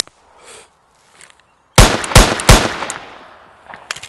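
Three gunshots in quick succession, about a third of a second apart, each a sharp crack, with an echoing tail that fades over the next second or so.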